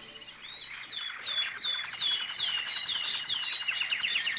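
Small birds chirping: a rapid run of high, downward-sliding chirps, about four a second, used as a morning birdsong sound effect.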